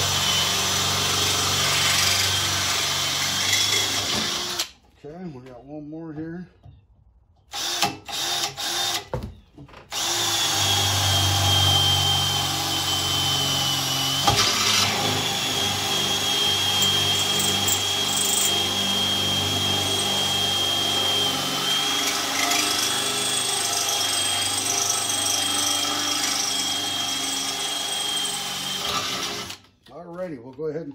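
Cordless drill boring 5/16-inch holes through a generator's thin-walled tubular frame: a steady high whine for about four seconds, then, after a pause broken by a few clicks, a second long run of about twenty seconds that stops just before the end.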